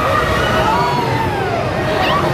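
Riders on a swinging, spinning pendulum amusement ride yelling and screaming as it swings high, several voices rising and falling over a steady low rumble from the ride.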